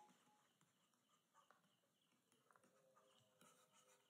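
Near silence: a pause between spoken phrases, with only a very faint background.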